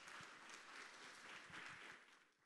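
Faint audience applause in a large room, with a few soft low thumps.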